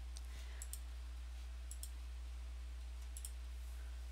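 A steady low hum with faint room noise under it, and a few faint, sharp clicks scattered through it.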